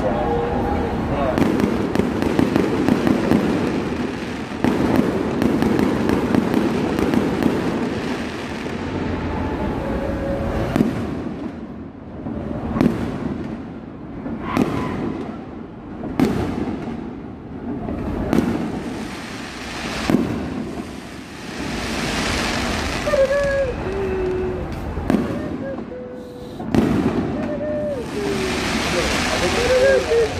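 Fireworks going off: a dense run of crackling for the first several seconds, then single sharp bangs about every two seconds.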